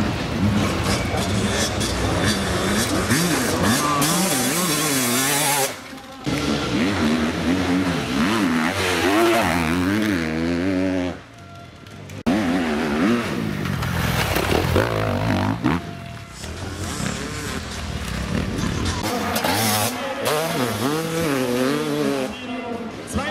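Enduro motorcycle engines revving hard, the pitch rising and falling quickly as the throttle is worked, with abrupt breaks about six and eleven seconds in.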